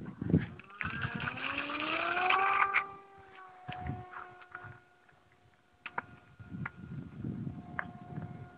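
RC model airplane's motor and propeller spooling up with a rising whine for takeoff, then holding a steady tone as the plane flies away, with wind buffeting the microphone.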